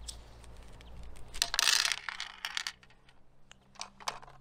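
A roll of Mentos being opened and handled with rubber-gloved hands: a loud rustle of the wrapper tearing about halfway through, then a few light clicks as the mints are handled.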